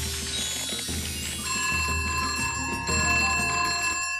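Cartoon background music with a shimmering high sweep, then a steady bell-like ringing from about a second and a half in: a cartoon bellflower ringing like a telephone.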